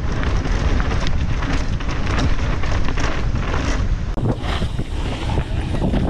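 Wind blasting across the camera microphone on a fast mountain bike descent, over the rumble of knobby tyres on a dirt trail and the bike's rattling and clattering over bumps. About four seconds in the sound changes slightly as another riding clip takes over, with the same wind and trail noise.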